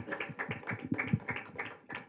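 A rapid, irregular run of sharp clicks and taps, several a second, with no speech over it.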